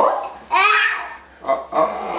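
A baby laughing in a few short, high-pitched bursts.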